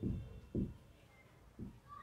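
Marker pen writing on a whiteboard: a few faint soft strokes and a brief thin squeak of the felt tip on the board.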